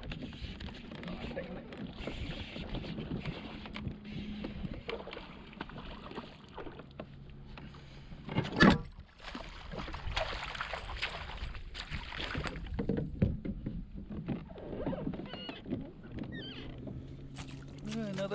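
Water splashing as a hooked largemouth bass is reeled in to a fishing kayak and scooped into a landing net. The loudest moment is one sharp splash a little past halfway.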